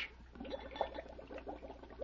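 Water bubbling in many small quick blips: a radio sound effect of hydrogen gas bubbling up where metallic sodium reacts with water.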